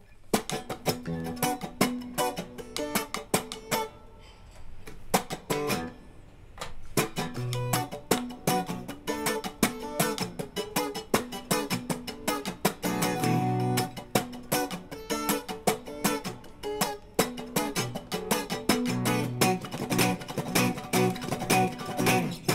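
Electric guitar played through amp and cabinet emulation effects, a run of picked notes and chords with a quieter stretch about four to six seconds in.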